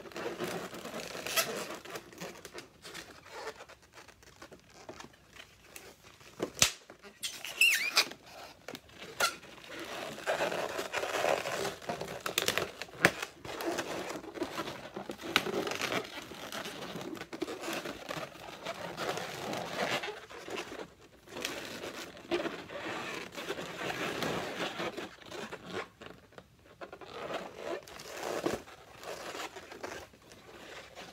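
Latex twisting balloons rubbing, crinkling and squeaking as they are handled, twisted and tied into a balloon cow, with scattered sharp clicks and a short high squeak about seven seconds in.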